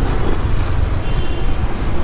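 Wind rumbling on the microphone while riding a Honda Activa scooter along a busy street, with the scooter's running engine and road traffic underneath.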